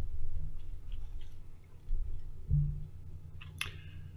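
Handling noises as a ceramic coffee mug is picked up from a desk: faint scattered clicks and rustles, a soft knock about two and a half seconds in, and a brief noisier sound near the end, over a steady low hum.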